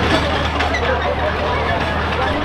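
A small crawler tractor's engine running at a steady low idle, under the chatter of a crowd.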